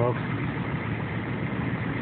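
A 1986 Ford F-350's 6.9-litre IDI V8 diesel running steadily at about idle, heard from inside the cab.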